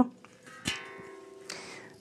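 A steel tank drum cut from a gas cylinder is struck or knocked once, about two-thirds of a second in, and rings on with several steady, clear metal tones that slowly fade. A soft rustle of the drum being handled comes near the end.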